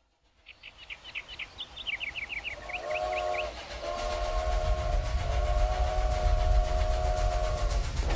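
Steam train sound effects. Birds chirp briefly, then a steam whistle gives a short blast and a long held blast, over a low train rumble that grows louder.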